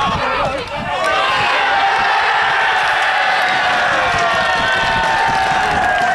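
Football crowd cheering a goal. Many voices shout together from about a second in, holding one long cheer that slowly falls in pitch.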